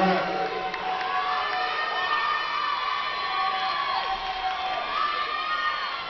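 Audience cheering and shouting, many voices yelling over one another with rising and falling calls.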